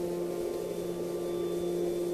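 A steady, sustained drone held on one low note with a fainter octave above it, like a held musical pad under the drama.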